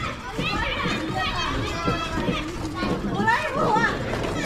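Children's voices calling and chattering, with a high, sing-song child's shout standing out near the end.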